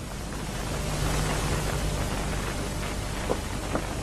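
Steady rushing, rain-like noise that swells about a second in and holds, with a faint low hum under it and a few light taps near the end.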